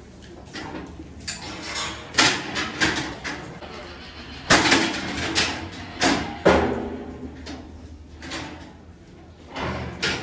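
Steel cattle crush gates and bars banging and rattling as a cow is moved into the crush. There is a series of knocks, with the loudest bangs about halfway through and again about a second and a half later.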